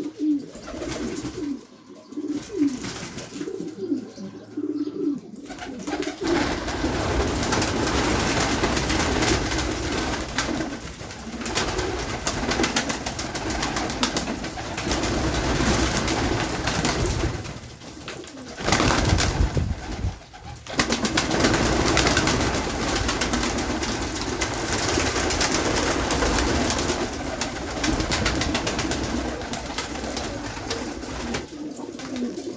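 Domestic pigeons cooing in a loft. From about six seconds in, a loud, steady rushing noise covers the cooing, briefly louder about nineteen seconds in.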